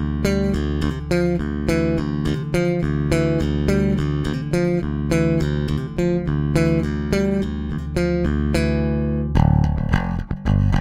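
Electric bass guitar playing a riff of repeated plucked notes through a clean bass amp, with no distortion. Near the end the tone changes and turns thicker and grittier.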